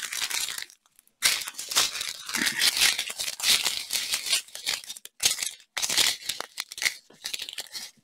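Clear plastic zip-top bags of diamond-painting drills crinkling and rustling as they are picked up, shuffled and sorted by hand, with a short pause about a second in.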